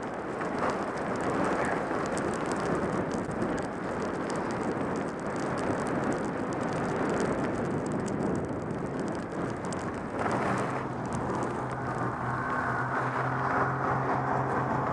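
Skis sliding and scraping over snow at speed, with wind rushing past the microphone. Near the end, as the skis slow, a steady engine hum comes in.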